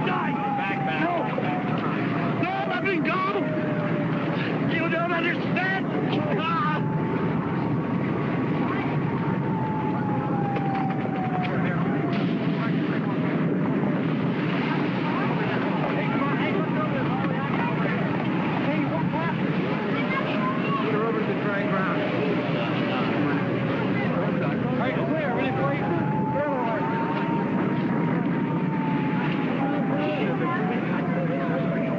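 A siren wailing slowly, its pitch falling and rising again over several seconds at a time, over a steady din with voices in it.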